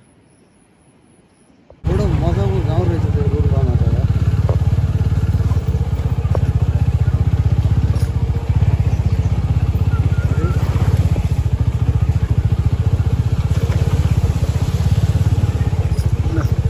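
Motorcycle engine running steadily and close, cutting in suddenly about two seconds in and staying loud throughout.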